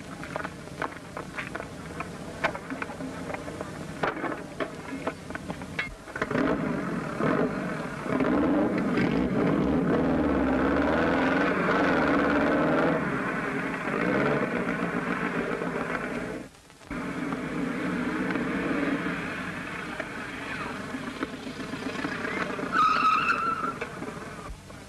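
Motorcycle engines starting and running as the riders pull away, the engine sound loud and steady with a wavering pitch. After a break about two-thirds of the way in, an engine carries on more quietly. A short high-pitched sound comes near the end.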